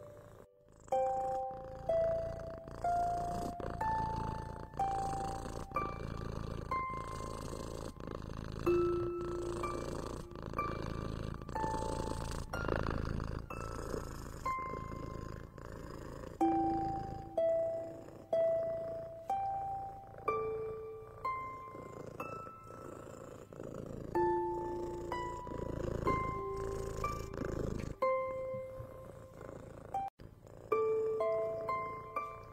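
A cat purring steadily under a slow, gentle melody of single plucked notes, about one a second. The purring stops suddenly about two seconds before the end, leaving the notes alone.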